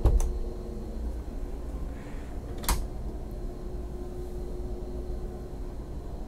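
Galley drawer on a boat pushed shut with a sharp click at the start, and another single click almost three seconds in, over a steady low hum.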